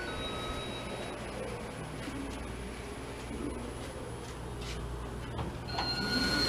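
An elevator hall chime's lower note sounds for about the first second, then the Otis Gen2 elevator's doors slide open with a low, even rumble and a few light clicks. A higher chime note starts just before the end.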